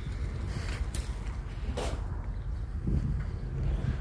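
Footsteps on concrete pavement, a few soft steps over a steady low rumble.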